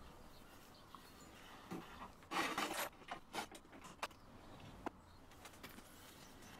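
Hand tap being turned with a T-bar tap wrench to cut threads in a drilled metal plate: faint, irregular metallic scraping and a few sharp clicks, the loudest scrapes about halfway through.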